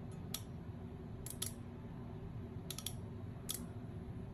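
Six or so short, sharp clicks, some in quick pairs, over a steady low electrical hum.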